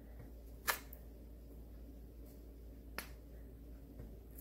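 Two sharp clicks a little over two seconds apart, the first the louder: small hard craft pieces, beads or the glue bottle, tapping on the tabletop as beads are pressed into glue.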